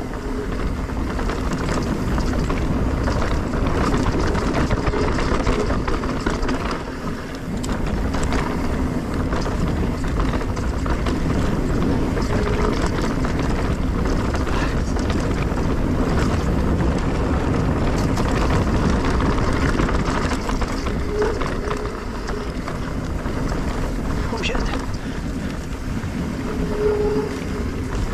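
2023 S-Works Enduro mountain bike descending a dirt singletrack: knobby Maxxis tyres rolling over the dirt, the bike rattling and clicking over bumps, and wind rushing over the microphone, with a brief lull about seven seconds in.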